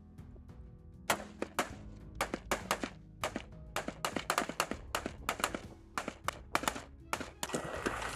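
Music with a low sustained tone under a fast, irregular run of sharp cracks, several a second, starting about a second in: rifle shots fired on a training range. Near the end the cracks stop and a steady hiss takes over.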